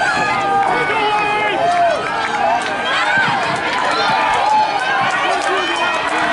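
Spectators at a track meet shouting and cheering on relay runners, many voices overlapping throughout.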